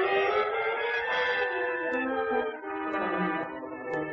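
Orchestral film score led by brass, playing a melody in long held notes.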